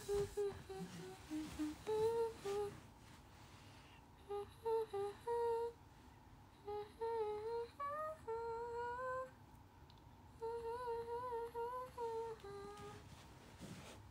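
A woman humming a wordless tune in short phrases of held, stepping notes, her cupped hands over her mouth.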